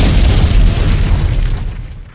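Explosion sound effect: a sudden loud boom with a deep rumble that fades away over about two seconds.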